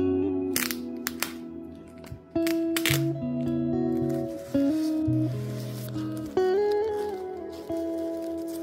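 Background music of slow, sustained notes, with a few short crackles of a plastic disposable diaper's tabs being pulled open about half a second and a second in.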